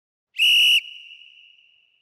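A single short, steady whistle blast of about half a second, then a fading tail. It marks ten seconds left in the rest period of a round timer.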